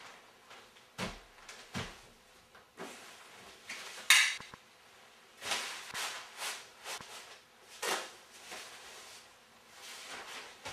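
A walking-stick umbrella striking a watermelon over and over: a run of irregular sudden blows, the loudest and sharpest about four seconds in, with a quick cluster of hits a little later.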